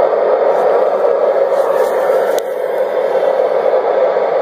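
Steady static hiss from an FM amateur radio receiver's speaker while tuned to the AO-91 satellite downlink, with no voice coming through.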